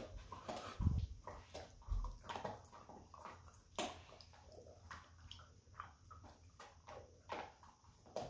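Dogs chewing on chew sticks: irregular wet gnawing and crunching clicks, with a low thump about a second in.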